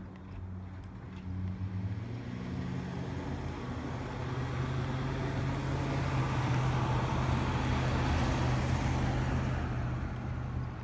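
A passing motor vehicle: a steady low engine hum with a rushing noise that grows louder over several seconds and peaks near the end.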